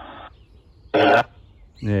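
Spirit box radio sweep played through a small JBL Bluetooth speaker: a short burst of static at the start, then an abruptly cut snippet of broadcast voice about a second in, which is the loudest sound. A man says "é" near the end.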